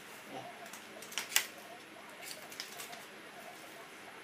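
Small objects and plastic packaging being handled by hand: a few light clicks and rustles, the sharpest click about a second and a half in and a few more between two and three seconds in.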